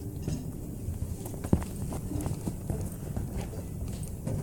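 Hard-soled dress shoes walking on a wooden stage floor: scattered knocking steps, the sharpest about one and a half seconds in.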